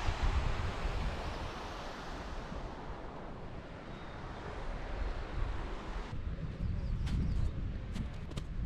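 Wind buffeting a camera microphone, a steady rush of noise heavy in the low end. Near the end come a few short crunches of footsteps on snow.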